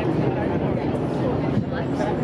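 Indistinct chatter of several people talking at once, over a steady low rumble.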